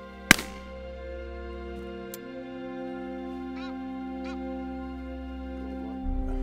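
Soft instrumental background music with long held notes. About a third of a second in, a single loud shotgun shot cracks; later a goose honks twice, two short rising-and-falling calls about a second apart.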